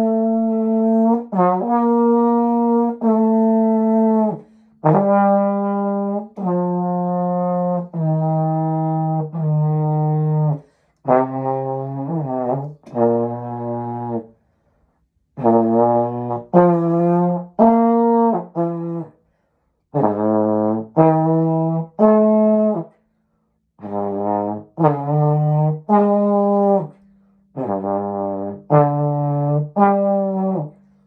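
Slide trombone played solo: a melody of mostly held notes, a second or two each, with some quicker runs, in phrases broken by short gaps.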